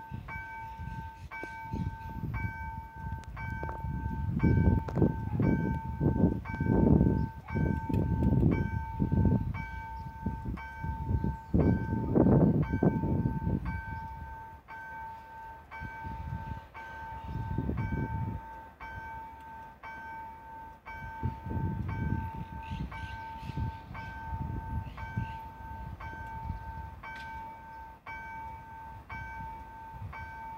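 Railway level-crossing warning bell ringing in a rapid, steady repeat while the crossing is active, the signal that a train is approaching. Irregular low swells of noise run underneath it, loudest in the first half.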